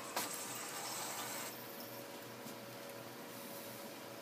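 Quiet room noise: a steady faint hum and hiss, with a single short click just after the start.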